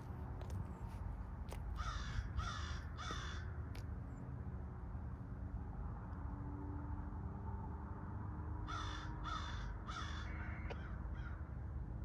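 A bird calling: three calls a little over half a second apart about two seconds in, and another three about nine seconds in, followed by a couple of fainter calls, over a steady low rumble.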